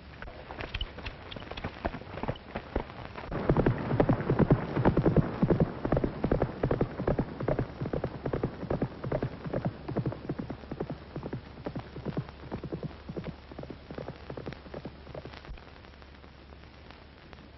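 Racehorse galloping, a quick run of hoofbeats that grows loud a few seconds in and then fades steadily as the horse draws away.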